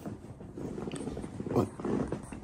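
A man's low, rough groan with a growl-like rasp, then a spoken word begins near the end.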